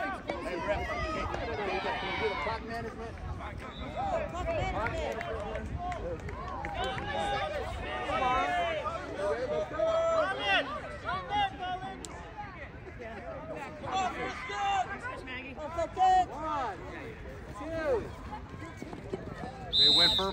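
Several people on a sports sideline talking and calling out at once, indistinct chatter with no single clear voice and a few louder shouts.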